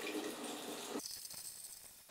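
Kombucha being poured from a large glass jar through a funnel into a glass growler, a steady stream of liquid splashing. About a second in, the pouring sound gets much quieter.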